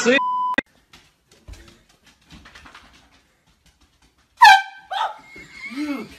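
A short steady bleep just after the start. Then, about four and a half seconds in, a sudden very loud, high-pitched sound lasting about half a second, in two parts, followed by voices.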